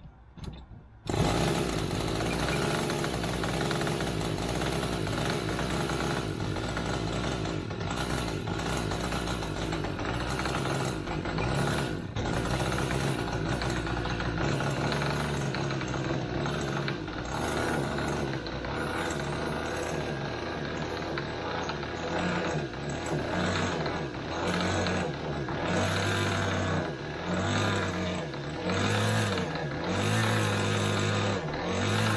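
Magnum .46 two-stroke glow engine on a model plane, spun by an electric starter, catches about a second in and keeps running, loud and continuous, turning more uneven and pulsing in the second half. It runs very rich at both the bottom and top end.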